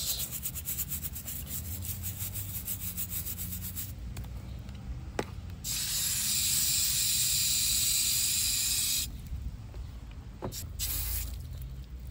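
Stiff plastic brush scrubbing a tortoise's shell in rapid back-and-forth strokes for about four seconds, then a garden hose spray nozzle jetting water onto the shell for about three seconds, followed by a few more quiet brush strokes.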